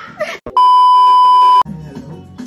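A loud, steady electronic bleep lasting about a second, cutting in and off abruptly: a censor-style bleep dubbed into the edit. Background music plays before and after it.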